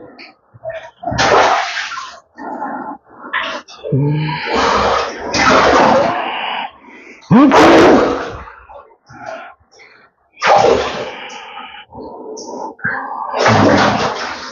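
A man's loud shouts and cries in irregular bursts, with no clear words, some rising in pitch.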